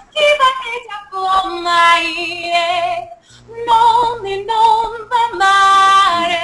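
A woman singing an Italian opera aria unaccompanied, in short phrases of held notes with vibrato, ending on a long, loud sustained high note near the end.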